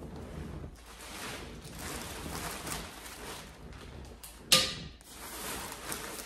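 Fabric rustling as a stitching project is handled and put away, with one sharp knock about four and a half seconds in.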